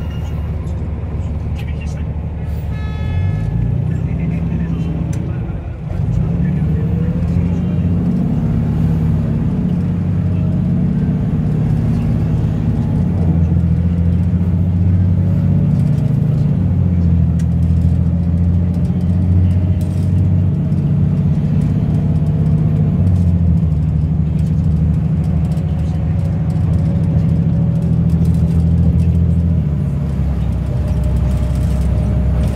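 Rapid-transit bus engine running while under way, heard from inside the passenger cabin: a steady low drone that grows louder about six seconds in.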